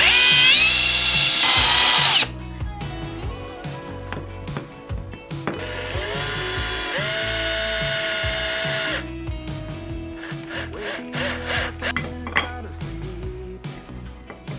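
Cordless drill boring into a pine board: the motor spins up and runs for about two seconds, then stops. After a pause it runs again for about three and a half seconds, stepping up in speed partway through, while driving a screw into the pine frame. A few light wooden clicks and knocks come near the end, over background music.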